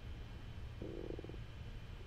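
Quiet room tone with a steady low hum, and a brief faint buzzy rasp made of rapid pulses a little under a second in.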